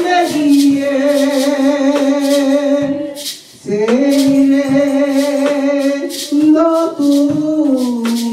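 A woman singing slow, long-held notes into a microphone, pausing for a breath about halfway through. Maracas are shaken in a steady beat behind her voice.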